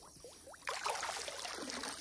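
Muddy pond water splashing and streaming, starting abruptly about two-thirds of a second in and then running steadily.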